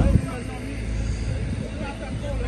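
A man's voice trails off at the start, then fainter talking continues over a steady low rumble.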